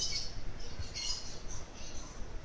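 A bird chirping: a few short, high-pitched chirps, one at the start, one about a second in and one near the end.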